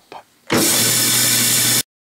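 Vertical bandsaw running, a loud steady hiss over a low hum, starting suddenly about half a second in and cutting off abruptly near the end.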